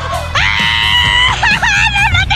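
A person screaming in fright while dropping and swinging on a rope pendulum swing, crying out "uh! ah!". One long, high scream is held for about a second, then breaks into shorter wavering cries near the end, with background music underneath.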